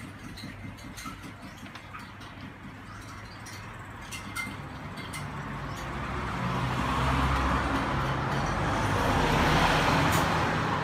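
A motor vehicle passing close by on the road: its engine rumble and road noise grow steadily louder from about halfway through and are loudest near the end.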